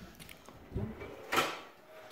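A kitchen drawer being handled and pushed shut: a soft bump about three-quarters of a second in, then a sharper knock about a second and a half in as it closes.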